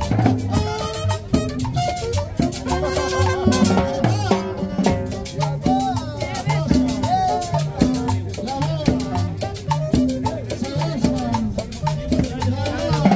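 Live salsa-style Latin dance music: a repeating bass line and steady drum and percussion beat under a wavering melody line.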